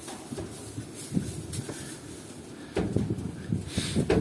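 Russian Heavy Draft foals playing and jostling on straw bedding: irregular hoof thuds and knocks over a low rumble, busier near the end.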